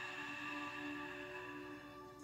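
Soft ambient background music of steady, sustained tones that grows a little quieter near the end.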